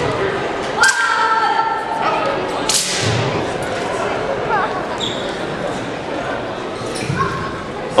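Several thuds of feet stamping and landing on a carpeted competition floor during a wushu routine, the sharpest a little under three seconds in, over voices chattering in a large hall.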